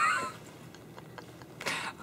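A person's high-pitched laugh trails off in a rising squeal at the very start. It goes quiet after that, with a short breathy hiss near the end.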